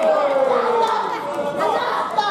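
Voices calling out over crowd chatter, with long drawn-out calls that slide down in pitch, one right at the start and another near the end.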